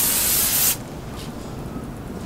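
A handheld aerosol spray can spraying one short burst, under a second long, that cuts off suddenly.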